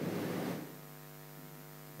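Faint, steady electrical mains hum, a low buzz of several even tones, heard in a pause in speech; a brief fading echo of the room at first.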